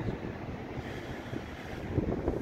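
Wind buffeting the microphone: a steady low rumble and hiss with no other distinct sound.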